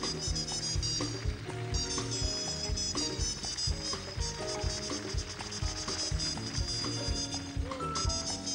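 Soul-jazz band playing an instrumental passage with no vocals: drums keeping a steady beat with bright high cymbal strokes, under bass and melodic instrument lines.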